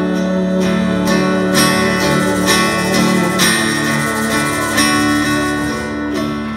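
Live acoustic guitar strummed in slow, spaced strokes over long held notes, a band playing an instrumental gap in a song.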